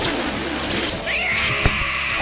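A high-pitched cartoon voice cry that rises about a second in and then holds on one long note, over music, with a sharp click shortly after it starts.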